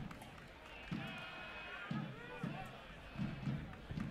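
Indistinct voices of players and spectators, with a raised, held shout from about one to two seconds in.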